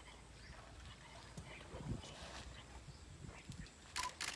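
Asian elephants drinking in a shallow waterhole: faint water sloshing and a few soft low thumps, the strongest about two seconds in.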